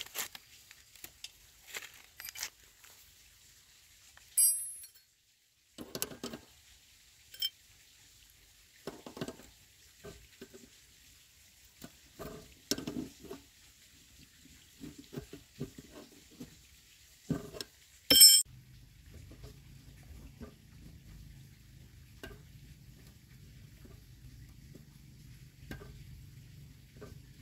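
Small metallic clicks and scrapes of a wrench and fingers turning the adjuster nut on a motorbike's rear drum-brake rod, setting the brake after new brake shoes are fitted. Two sharp ringing metal clinks stand out, the louder one about 18 seconds in, after which a low steady hum begins.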